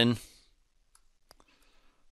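A few faint, sharp clicks of a computer mouse, starting about a second in.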